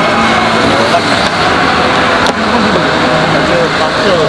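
Steady road traffic and car engine noise, with men talking over it.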